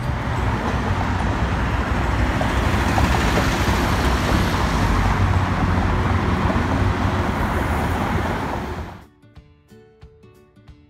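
City street traffic noise: a steady rumble of passing vehicles, heaviest in the low end, that cuts off about nine seconds in.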